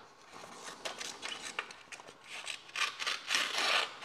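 Scissors of a Leatherman Charge+ TTI multitool cutting: a few faint snips, then louder rustling cuts from about two and a half seconds in.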